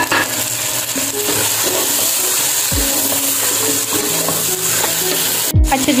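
Chicken, tomatoes and green chillies sizzling in hot oil in a non-stick kadai, with a steady hiss, while a wooden spatula stirs them. Two low thumps, about halfway through and near the end.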